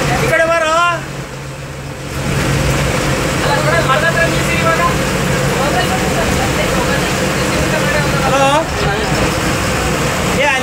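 A bus engine's steady low hum and road noise, heard from inside the driver's cabin, with voices talking over it now and then.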